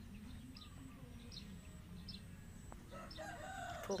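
Faint bird calls: short high chirps about once a second, and a longer, lower arched call starting near the end.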